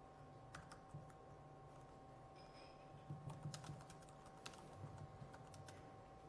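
Faint typing on a laptop keyboard: irregular single keystrokes and short runs of keys, busier in the second half, over a faint steady whine.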